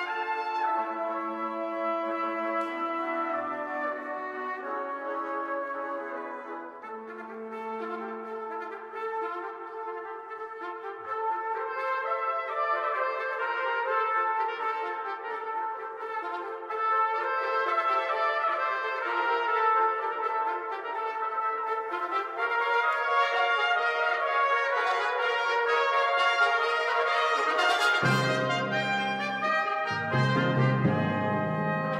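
Fanfare for seven trumpets, with held and moving chords that grow louder as it goes on. Low percussion comes in near the end.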